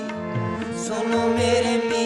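Sikh kirtan: a harmonium holding a sustained chord, with two deep bass-drum strokes from the tabla's bayan swelling under it and a chanted vocal line.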